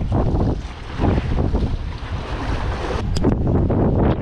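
Wind buffeting the microphone in an uneven rumble, over waves washing against the rocks.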